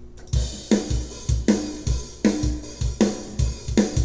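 Programmed metal drum groove from EZDrummer 2's Metal Machine library playing back at about 157 BPM: kick drum, a snare hit about every three-quarters of a second, and hi-hat and cymbals, starting just after the opening.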